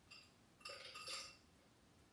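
Faint light clinks of kitchenware: a soft clink near the start, then two louder ringing clinks about half a second apart around the middle.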